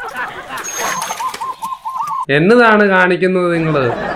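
A bird calls in a quick run of short, repeated notes, then a man's voice holds one long, drawn-out call for about a second and a half, louder than the bird.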